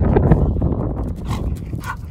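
A dog's breathing and vocal sounds as it runs back from fetching a ball, with a brief pitched sound near the end. Underneath is a steady rumble of handling noise from the phone being carried.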